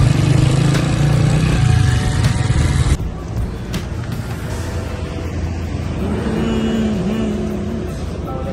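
Motorcycle engine running with wind noise on the microphone while riding, cutting off suddenly about three seconds in. Quieter background noise follows, with music coming in near the end.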